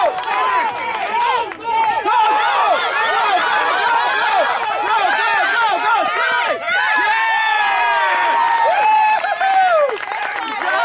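Crowd of baseball spectators yelling and shouting over one another, many high-pitched voices at once, without a break.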